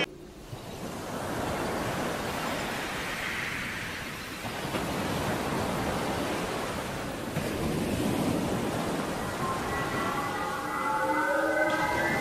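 Logo-animation sound effect: a steady rushing whoosh of noise, with sustained musical tones coming in near the end.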